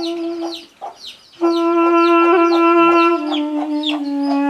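A chick peeping over and over in short, falling cheeps, over a wind instrument holding long notes. The instrument breaks off before one second in, comes back louder, and drops to a lower note about three seconds in.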